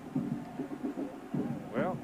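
Speech only: a male television commentator talking over the game.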